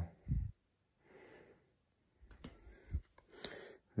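Soft breathing with a few light knocks and clicks as a plastic hubcap is handled and turned over.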